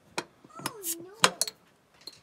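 Glass beer bottle being opened on a wall-mounted bottle opener: a few sharp clicks of metal against the cap, the loudest a little past halfway as the cap is pried off.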